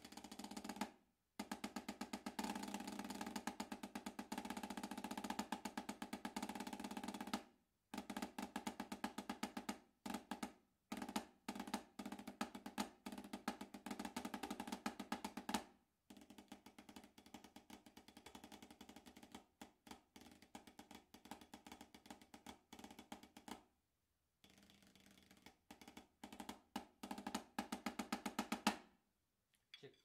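Wooden drumsticks on a 14-inch Sabian Quiet Tone snare practice pad fitted with a real snare-drum head, played at changing dynamics. It opens with a loud, fast roll for several seconds, followed by groups of strokes and a stretch of softer playing in the middle, then louder strokes again near the end.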